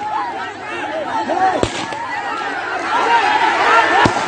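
A crowd of men shouting and yelling over one another, with one sharp bang about a second and a half in.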